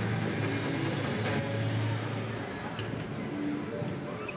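Crowd in a large indoor arena making a steady hubbub of voices and applause as the floor routine ends.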